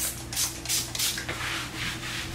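Self-tanning water being sprayed onto skin from a pump spray bottle: a run of short hissing sprays, about three a second, over a faint low hum.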